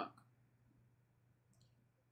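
Near silence: room tone with a low steady hum, broken by a couple of faint, brief clicks.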